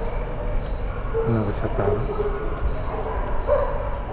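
Crickets chirping steadily in a high, even trill, with a faint voice sounding briefly in the middle.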